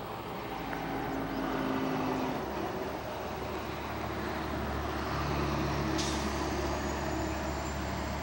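Heavy truck engine running nearby: a low, steady rumble that swells about two seconds in. There is a sharp click about six seconds in.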